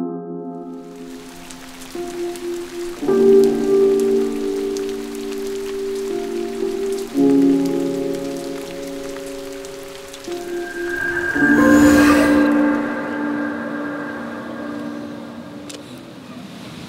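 Film score of slow held chords that change every few seconds, over the steady hiss of falling rain. A brief rush of noise swells and fades about twelve seconds in.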